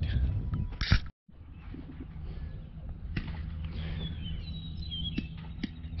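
Outdoor background noise with a low steady rumble, a few sharp clicks and faint high bird chirps about two-thirds of the way in. The sound drops out completely for a moment about a second in.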